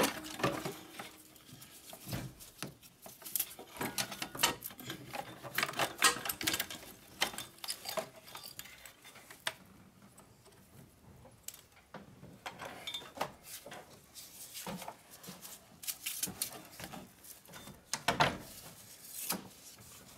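Irregular metallic clinks, knocks and light scrapes as a turbocharger is worked free and lifted out of a van's diesel engine bay by hand, its metal housing bumping against the surrounding pipes and brackets.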